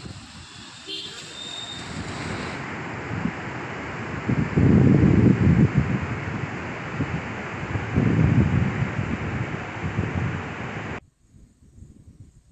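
Outdoor field sound with a steady rushing noise and heavy gusts of wind buffeting the microphone, the strongest about four to six seconds in and again about eight seconds in; it cuts off suddenly near the end.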